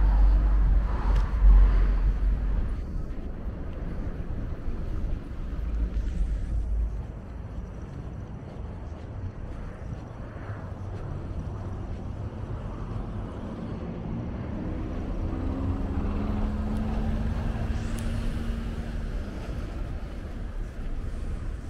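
City road traffic, a steady wash of passing cars with a heavy low rumble in the first few seconds. In the last third a single engine hum rises slightly in pitch and cuts off shortly before the end.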